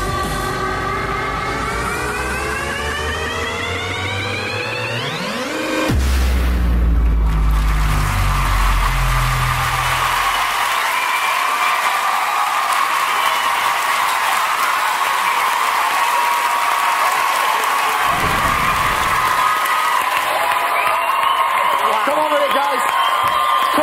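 Electronic dance music builds with a rising sweep and ends in a deep bass hit about six seconds in. Then a large audience applauds and cheers loudly for the rest.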